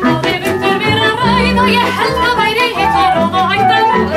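A woman singing a song in Icelandic, with an acoustic folk ensemble of flute, violin, double bass, accordion and keyboard accompanying her.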